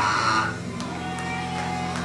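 Church instrumental accompaniment holding steady, sustained low chords. A preacher's shouted phrase ends in the first half second.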